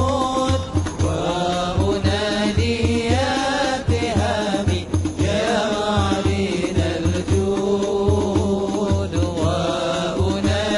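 A group of men singing an Arabic devotional song in praise of the Prophet Muhammad into microphones, over a steady low beat.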